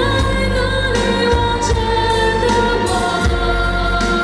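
A female singer singing a pop ballad live into a microphone, with long held notes, backed by a string orchestra and a steady bass.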